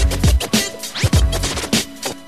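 Hip hop beat with heavy kick drums and turntable scratching over it, with no rapping.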